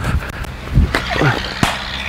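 Two sharp knocks about two-thirds of a second apart, a cricket ball pitching on the artificial-turf net surface and then meeting the bat, with faint voices behind.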